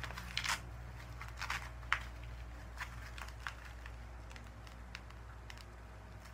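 Waist training belt being fastened and adjusted around the waist: a few short scratchy rasps of the strap and fabric, bunched in the first three seconds or so, over a steady low hum.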